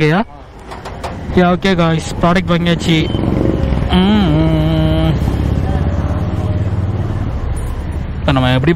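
A motorcycle engine comes in about three seconds in and then runs with a low, steady rumble. Voices talk over it.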